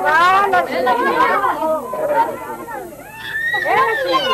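Several voices talking over one another: overlapping chatter with no clear single speaker.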